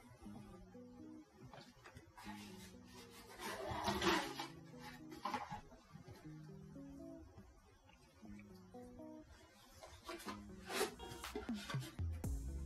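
Background music with a stepped bass line. Brief handling noises break over it about four seconds in and again near the end, as a clear plastic container of clay pebbles is shifted about.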